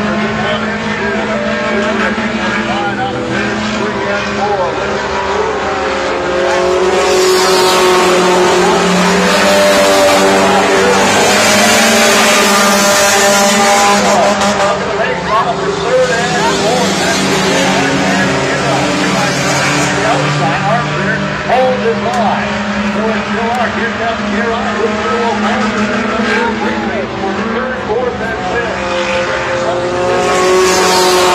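Several four-cylinder Hornet-class race cars running laps on a dirt oval, their engines rising and falling in pitch. They are loudest as the pack passes, about a quarter to halfway through.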